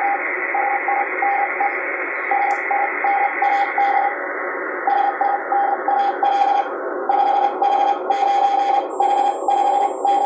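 Morse code (CW) signal received on a shortwave transceiver on the 40-metre band: a single steady beep tone keyed on and off in dots and dashes over band hiss. About seven seconds in, as the IF shift is turned up, the hiss turns brighter and a faint high whistle glides downward.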